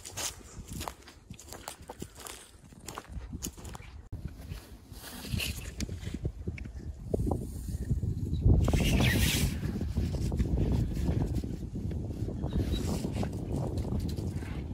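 Footsteps crunching through dry leaf litter with scattered light rustles, then from about eight seconds in a low rumble of wind buffeting the phone's microphone, in a cold, strong wind.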